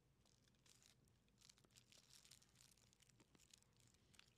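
Near silence, with faint, irregular crackling rustles.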